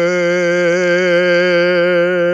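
A bass voice holding one long sustained note on a single breath, steady in pitch with an even vibrato.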